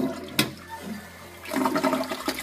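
Toilet flushing, water rushing and swirling down the bowl, louder in the last half second, with a sharp click about half a second in.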